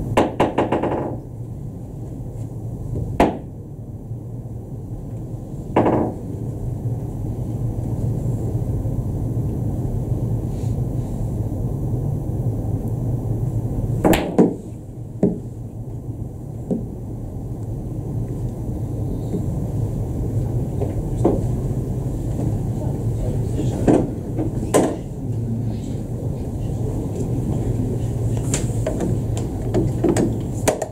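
Boccette billiard balls thrown by hand across the table. There is a quick run of clicks in the first second as the ball hits the other balls and the cushions, then single, scattered knocks and clicks through the rest. A steady low hum runs underneath.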